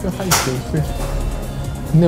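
A man speaking over background music.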